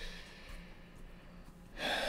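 A quiet pause with a faint steady hum, then a man's sharp intake of breath near the end.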